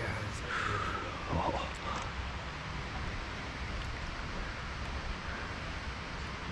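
Stream water flowing and rippling steadily around the wading angler's hand, with a low rumble underneath. A brief gliding cry sounds about a second in.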